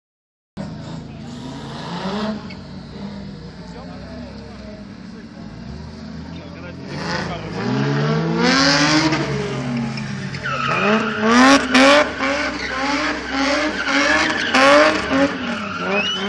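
Car engine revved hard and repeatedly during a drift, its pitch climbing and dropping over and over in quick succession from about ten seconds in, with tyres squealing and skidding on the tarmac.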